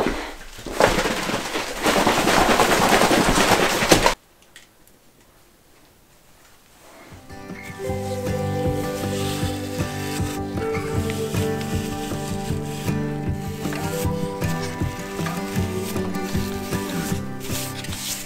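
A tin of wood oil shaken hard by hand for about four seconds, a loud rough rattling noise that stops abruptly. After a quiet pause, background music with sustained notes fades in and plays on.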